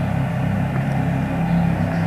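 A steady low hum that holds unchanged throughout, with no other sound standing out.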